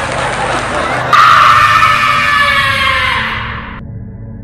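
A sudden, loud, shrill screech that slides slowly down in pitch, starting about a second in and cutting off sharply near the end, over a low droning music bed.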